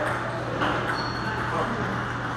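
Table tennis rally: a ping-pong ball clicking off paddles and table, with one short high ping about a second in, over a steady murmur of voices in a large hall.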